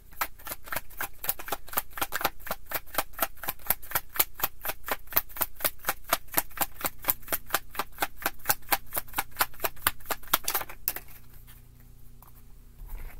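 A deck of tarot cards being shuffled in the hands: quick, even clicks about five a second as packets of cards slap together, stopping near the end.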